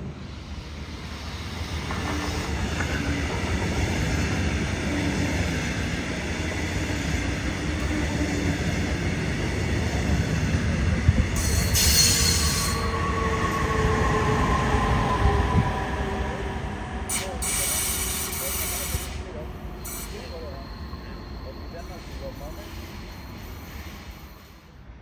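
A metronom double-deck push-pull passenger train, pushed by an electric locomotive, passing close by on the rails. The rumble of wheels on track builds from about two seconds in and is loudest about halfway, as the locomotive goes by with a whine falling in pitch, then fades away.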